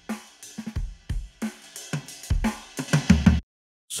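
A dry acoustic drum-kit breakbeat loop at 90 BPM, a jazz break auditioned from a sample library, plays a steady pattern of drum hits and cuts off abruptly shortly before the end.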